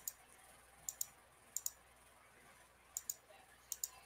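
Faint computer mouse clicks, mostly in quick pairs, about five times over the few seconds, over quiet room tone.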